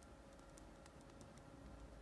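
Near silence, with faint small ticks of a gel pen writing on sketchbook paper.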